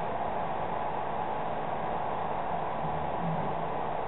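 Steady, even hiss of background noise with no distinct event in it.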